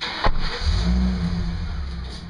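A sharp knock, then a U-Haul moving truck's engine running with a steady low hum that eases off toward the end.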